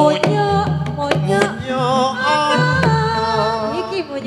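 Live Javanese jaranan ensemble music: a wavering, held melody line carried over sharp drum strokes and a low, sustained gong-like hum.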